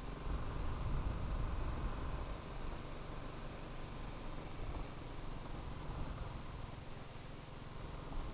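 BMW G 310 GS single-cylinder engine running steadily while riding on a gravel road, heard as a low rumble with a haze of tyre and wind noise over it.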